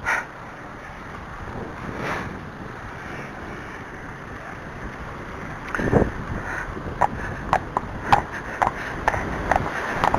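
Wind buffeting the microphone, with a car passing close by about six seconds in. After it, the horse's hooves click on the lane surface, roughly two a second.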